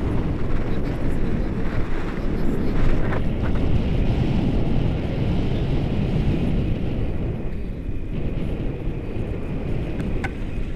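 Wind rushing over the camera microphone in flight under a tandem paraglider: a steady low rumble.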